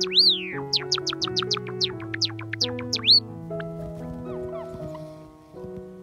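Java sparrow calling over soft piano background music: one long rising-and-falling chirp, then a quick run of about a dozen short, falling chirps lasting some two and a half seconds and ending in another arched note, after which only the music carries on.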